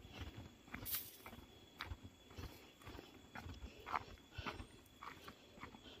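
Footsteps of a person walking on a dirt footpath: soft, faint thuds at about two steps a second, with a few sharper scuffs.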